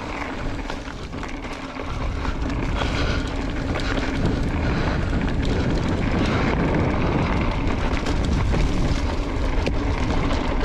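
Specialized Levo electric mountain bike rolling along a dirt singletrack: a steady hum from its mid-drive motor over tyre noise and wind buffeting on the camera microphone. The low wind rumble grows heavier about two seconds in.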